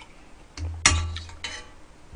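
Metal spoon scooping in a stainless steel pot. One sharp ringing clink comes just under a second in, followed by a few lighter clicks and scrapes.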